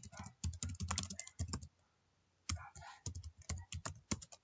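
Typing on a computer keyboard: a quick run of key clicks, a pause of just under a second, then another run of keystrokes.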